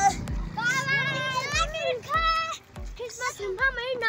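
Several children calling out in high, drawn-out voices, overlapping one another, with short low thuds recurring about twice a second underneath.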